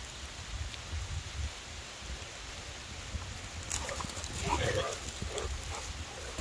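Steady hiss of light rain with a low wind rumble on the microphone. From about four seconds in, a few faint short sounds rise briefly over it.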